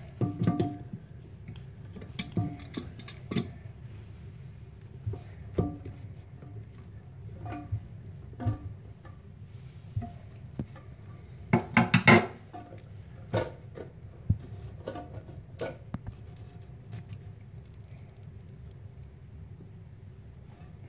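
Channel-lock pliers and a metal coupling nut clicking and clinking as a toilet's water supply line is tightened under the tank, some clinks leaving a short ringing tone; a louder cluster of clatter comes about twelve seconds in.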